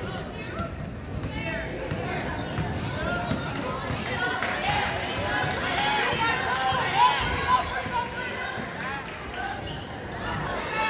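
A basketball being dribbled on a hardwood gym floor, with players' sneakers squeaking and spectators talking throughout. The sharpest knock comes about seven seconds in.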